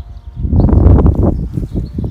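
Loud low rumbling noise on the microphone, starting about half a second in and easing off near the end.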